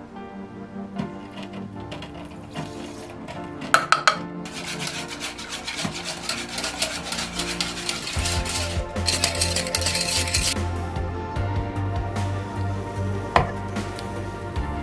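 A whisk beating milk and custard in a saucepan, with rapid scraping strokes from about four seconds in until about ten. A few clinks come just before and a single knock near the end, over background music.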